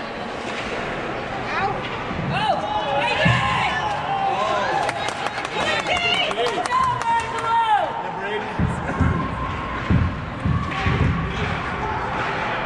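Ice hockey game in a rink: voices calling and shouting, with a quick run of sharp clacks of sticks and puck about halfway through and a few low thuds later on.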